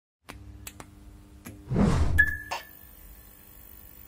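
Logo-intro sound effect: a few sharp clicks, then a rush of noise swelling into a loud low hit about two seconds in, with a thin high ringing tone held after it, settling into a faint steady hum.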